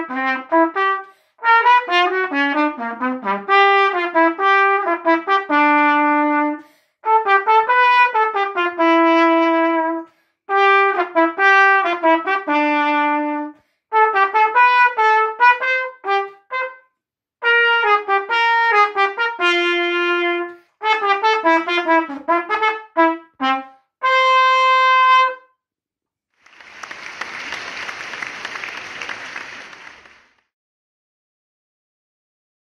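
Solo trumpet playing a melody in short phrases with brief breath breaks between them, ending on a long held note about 25 seconds in. A few seconds of rushing noise follow near the end.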